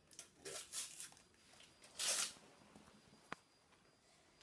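Foil Panini sticker packet being torn open and its stickers handled: short crinkly rustles, with the loudest rip about two seconds in, and a single sharp click a little after three seconds.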